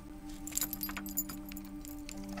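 Small metal ornaments jingling with soft scattered clinks, like silver jewelry moving as someone turns, over two low held notes of background music.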